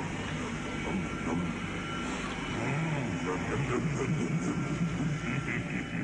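Indistinct voices from an old TV episode's soundtrack over a steady rumbling background.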